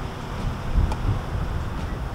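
Wind buffeting the microphone: an uneven low rumble that rises and falls, with a faint click a little under a second in.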